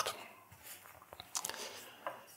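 Faint rustling and a few soft crackles of a bread loaf being handled and set down on a wooden cutting board.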